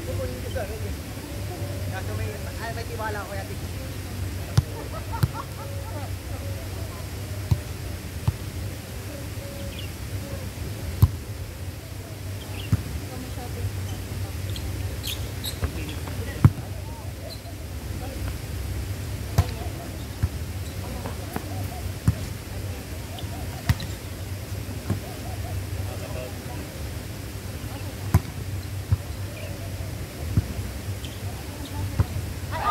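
Volleyball being played: sharp slaps of hands and forearms on the ball at irregular intervals, a dozen or more, over faint voices and a steady low hum.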